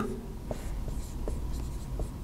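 Marker pen writing on a whiteboard: a few short, faint strokes as letters are drawn.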